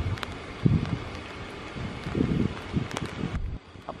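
Wind buffeting the microphone in irregular low gusts, over a faint steady outdoor hiss.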